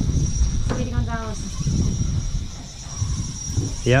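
Spinning reel's drag clicking in a fast, high-pitched run as a hooked fish pulls line off the spool, over a low rumble, with a brief voice about a second in.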